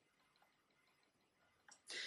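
Near silence: room tone with faint, evenly spaced ticking.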